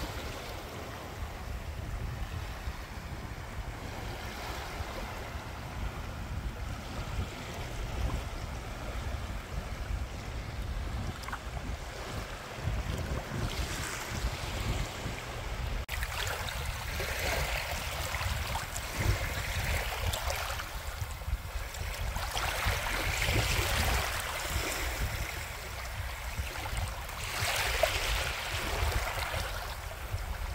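Small waves lapping and washing onto a shallow sandy bay shore, with wind rumbling on the microphone. About halfway in the sound changes, and the wash rises and falls in swells every few seconds.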